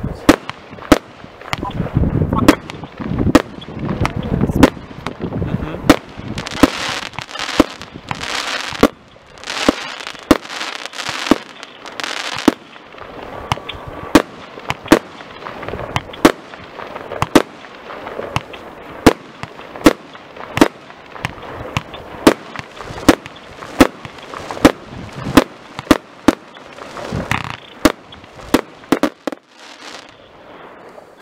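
Euro Pyro PSM-8021 Golden Eagle firework cake firing shot after shot, a little over one sharp report a second, with stretches of hissing between the bangs.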